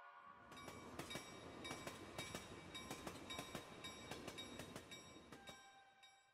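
Faint train running, its wheels clicking irregularly over rail joints, fading out about five seconds in, with a light ringing tone near the end.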